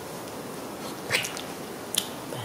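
A baby macaque gives one short, high squeak about a second in, followed by a sharp click near the end.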